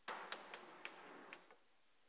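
Chalk writing on a blackboard: a run of sharp taps, about six, with scratchy strokes between them, stopping about a second and a half in.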